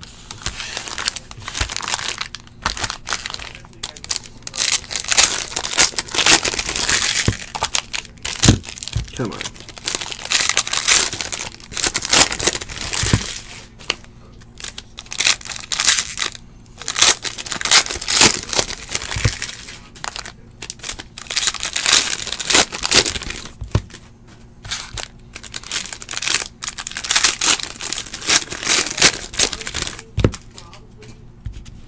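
Foil trading-card pack wrappers being crinkled and torn open by hand, in repeated bursts with short pauses, as cards are pulled out and handled.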